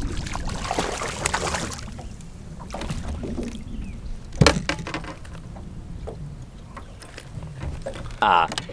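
Water splashing as a hooked largemouth bass thrashes at the surface beside a small boat, over a steady low rumble of wind on the microphone. A single sharp knock about four and a half seconds in, with a few lighter clicks.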